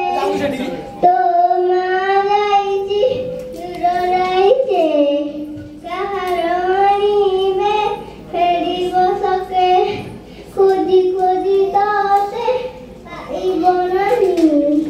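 A young girl singing solo into a handheld microphone, unaccompanied, in held, wavering notes. The phrases last a couple of seconds each, with short breaks for breath between them.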